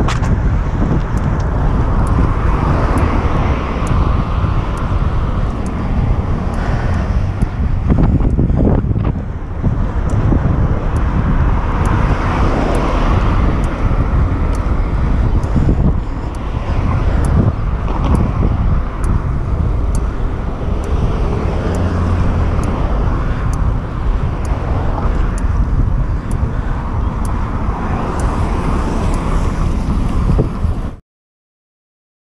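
Steady wind rumble on the microphone of a camera mounted on a moving road bike, mixed with road and car traffic noise.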